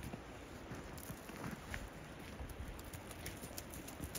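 Faint outdoor ambience: a low uneven rumble with scattered light ticks.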